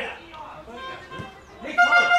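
Faint shouts from sideline spectators, then near the end a loud, steady horn note starts and holds.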